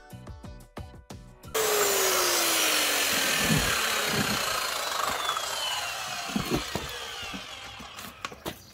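Background music, then about one and a half seconds in, a handheld electric circular saw is heard, loud and spinning down with a slowly falling pitch after the cut through the wooden board, fading away. A few knocks as the cut board and the tyre are handled.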